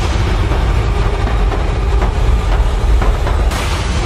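Intro soundtrack: a loud, steady, deep rumbling bass drone, with a bright hissing swell rising near the end.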